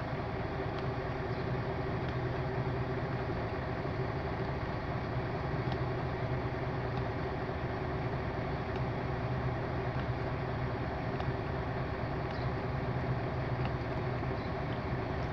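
Mercedes-Benz Actros truck diesel engine idling steadily, heard from inside the cab. A few faint clicks, about three, from the dashboard buttons being pressed.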